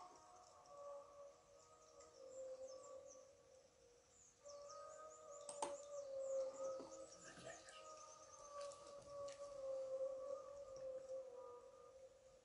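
Faint, long-held melodic tones, like distant singing or chanting, breaking off briefly about four seconds in, with birds chirping over them.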